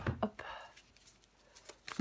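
A tarot deck handled on a wooden table: a few sharp taps or knocks of the cards against the wood at the start and one more near the end, with light card rustling in between.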